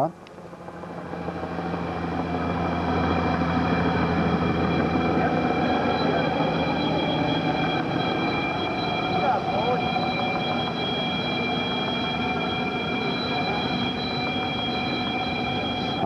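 Steady whine of aircraft turbine engines at an airport, several high tones over a rumbling noise, swelling over the first few seconds and then holding steady.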